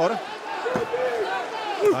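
Men's voices shouting over the arena crowd, with dull thuds of punches landing on a fighter pinned on the mat.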